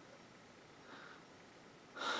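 Near silence: room tone, with one faint, brief soft noise about halfway through.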